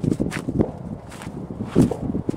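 Footsteps crunching through dry grass and cut brush: a few irregular steps, the loudest near the end.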